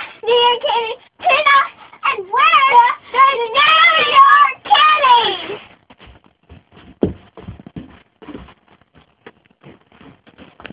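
Young girls singing high-pitched phrases together, stopping about six seconds in. After that only scattered knocks and thumps, the loudest about seven seconds in.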